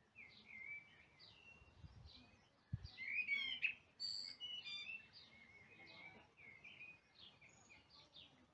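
Birdsong background track: several small birds chirping and singing in short, high phrases, busiest near the middle. A soft low thump comes a little before the middle.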